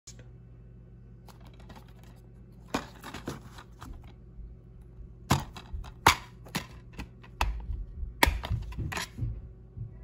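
Plastic DVD case handled and opened, with irregular clicks, taps and knocks that grow louder and more frequent from about halfway, over a low steady hum.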